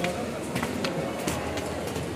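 Ambience of a large indoor hall: a steady wash of indistinct background voices, with a few sharp clicks or knocks scattered through it.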